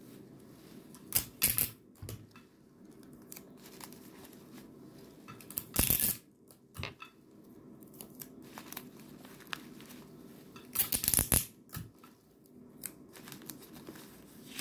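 Paper tearing in three short rips, about a second, six seconds and eleven seconds in, with faint paper handling between them.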